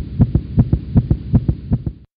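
A rapid, even run of low thumps, about six a second, like a racing heartbeat sound effect. It cuts off suddenly at the end.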